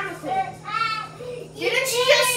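A young child singing in a high voice, in short wordless phrases with gliding pitch.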